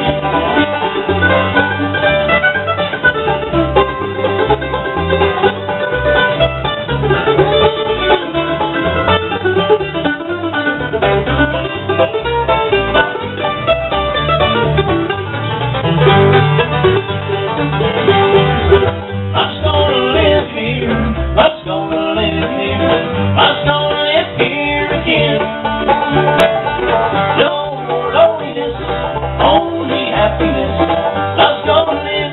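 Bluegrass band playing live: rolling five-string banjo picking with mandolin, acoustic guitar and upright bass.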